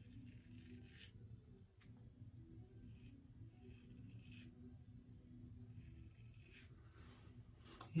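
Faint scraping of a vintage 1969 Gillette Black Beauty adjustable safety razor with a Voskhod blade cutting whiskers through shaving lather, in a series of short strokes: the blade's audible 'feedback' on the stubble.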